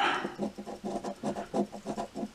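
A large silver coin scraping the scratch-off coating of a lottery scratch ticket, in a rapid run of short strokes.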